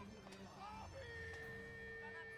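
A single steady held note, starting about a second in and lasting about two seconds without changing pitch, over low background noise.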